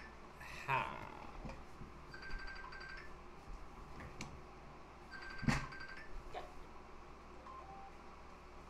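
A phone ringing faintly, its short ringtone phrase repeating about every three seconds. A knock sounds about five and a half seconds in.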